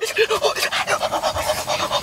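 A boy laughing in quick breathy gasps through his hands, with a few short voiced hoots near the start.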